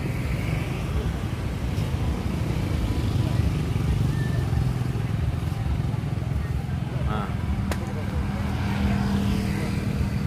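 Steady low rumble of street traffic with motorbike engines in it. A steady engine hum comes in about three-quarters of the way through, and a brief distant voice is heard just before it.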